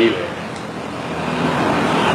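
Road-vehicle noise, a steady rumbling hiss that slowly swells as if a vehicle is approaching or passing, after a man's brief word at the start.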